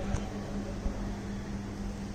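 A steady low hum over an even background hiss, with a few faint clicks.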